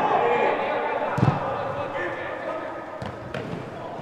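A football being kicked hard in a large indoor hall, one sharp thud about a second in with a lighter knock near the end, while players' voices call and echo off the hall.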